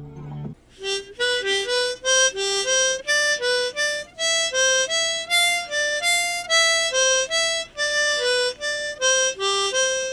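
Harmonica playing a blues riff slowly as separate single notes, about three a second, stepping up and down within a narrow range; the last note is held and fades near the end. The tail of a guitar piece sounds for the first half second.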